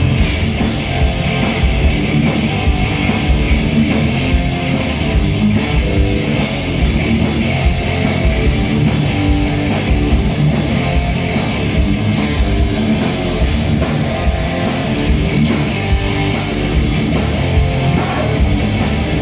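Industrial metal band playing live and loud: heavily distorted electric guitars and bass over a drum kit with fast, repeated kick-drum hits.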